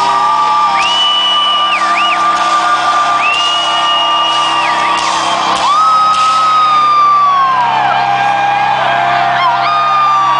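Rock concert crowd whooping, shouting and whistling over sustained, ringing music from the stage.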